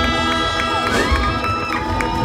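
Live rock band with electric guitars and drums winding up a song, held notes ringing over low drum hits, while the crowd cheers.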